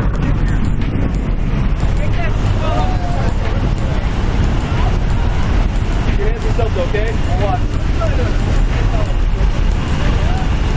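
Loud, steady drone of a skydiving jump plane's engine together with the rush of wind through its open door, heard from inside the cabin. Faint voices are buried under the noise.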